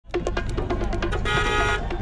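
Street traffic with a low engine rumble and scattered clicks, and a car horn sounding once for about half a second a little past the middle.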